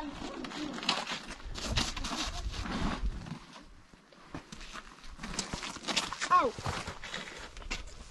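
Gusty wind buffeting the microphone outdoors, strongest in the first few seconds. About six and a half seconds in there is a brief high call that rises and falls in pitch.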